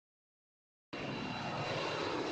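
Silence for about a second, then the steady engine noise of a twin-engine jet airliner climbing out after takeoff, starting suddenly, with a faint high whine over it.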